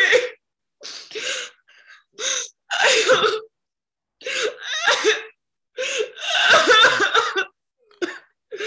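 A woman crying in sobs: gasping, breathy bursts with wavering whimpers, coming again and again with short silent gaps between them.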